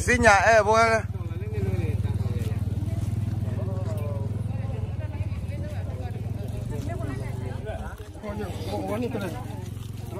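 Two-wheel walking tractor's single-cylinder diesel engine idling steadily, an even low chugging. A loud voice cuts over it in the first second.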